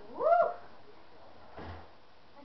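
A pet's single short call, rising in pitch and then holding, under half a second long. A soft low thump follows near the end.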